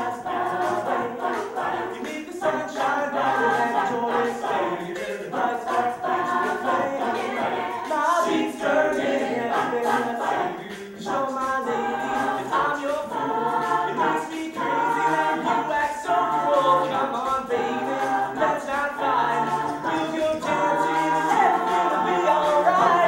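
Mixed-voice student a cappella group singing without instruments: a lead voice over close vocal harmonies, with a sung bass line moving in steady steps underneath.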